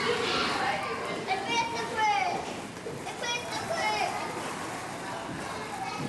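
Children's high-pitched voices calling and chattering at play, over a steady background hubbub.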